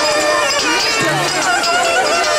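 Folk music playing loudly for a children's folk dance, with many children's voices chattering over it; a low note recurs about every second and a half.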